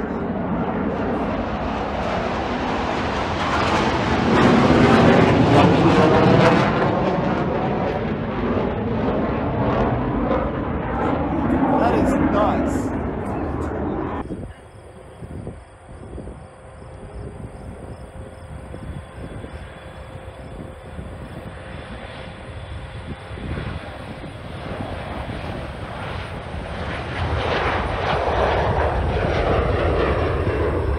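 Jet aircraft passing overhead, its engine noise swelling to a peak about five seconds in and then fading. After a sudden cut about halfway through, the sound drops to a quieter airfield background, and a jet's engines build again near the end as a DHL Boeing 737 freighter climbs out on takeoff.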